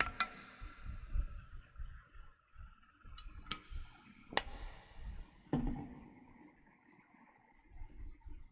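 Someone drinking water close to the microphone: a few sharp clicks and knocks from the drinking vessel, about four in all, spread over the first five and a half seconds, with faint low handling bumps between them.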